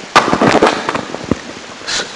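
A sudden loud burst of crackling and clicking noise just after the start, thinning to scattered sharp clicks that die away within about a second.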